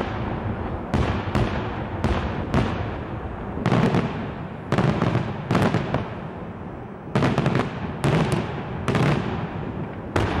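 Daylight fireworks display: aerial shells bursting in quick succession, loud sharp bangs about one to two a second with a rumbling echo carrying between them.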